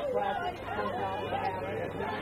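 Indistinct chatter of several voices at a lacrosse game, talking and calling over one another with no words clear.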